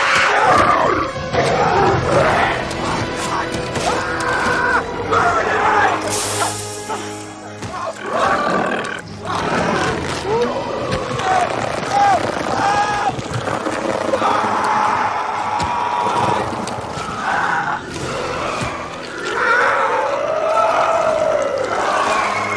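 Horror film sound mix: film score under a man's pained screams and groans and a creature's roars, with a long rising-and-falling cry near the end.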